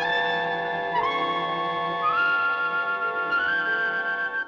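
Orchestral film score: a melody of long held notes stepping upward in pitch, over sustained chords.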